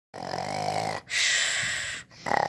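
A person's mock snoring for a sleeping plush character: a rasping snore on the in-breath for about a second, then a long hissing out-breath.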